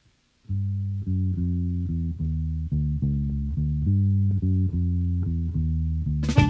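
Electric bass guitar playing a low, repeating blues riff on its own, opening a song; it starts about half a second in after a brief silence.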